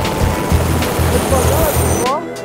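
Helicopter hovering close by: a loud, dense, steady rush of rotor and engine noise, with music underneath.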